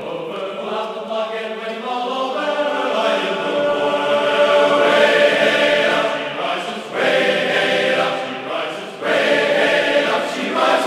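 Background music of a choir singing long, held notes, swelling louder about halfway through.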